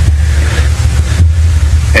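Steady low rumble with an even hiss over it, a constant background noise of the recording.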